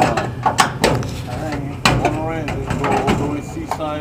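Indistinct talk between several men, with a few sharp clicks in the first second and a louder knock a little under two seconds in.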